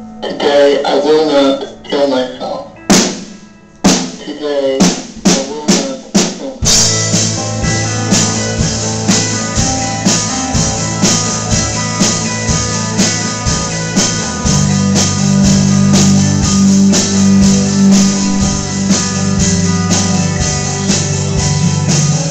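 Live rock band opening a song. First comes a sparse vocal passage with a run of drum hits that quickens. Then, about seven seconds in, the full band comes in with drums, bass guitar and electric guitar and plays on.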